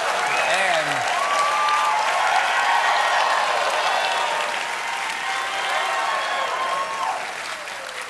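Studio audience applauding after a punchline, with a few voices shouting over the clapping; the applause dies down gradually toward the end.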